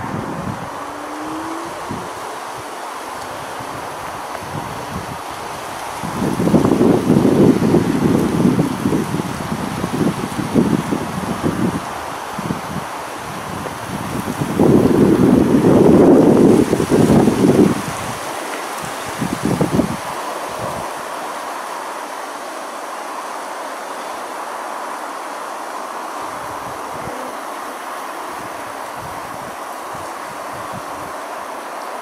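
Wind buffeting the camera microphone: a steady hiss broken by loud low rumbling gusts, two long ones in the middle and a short one just after.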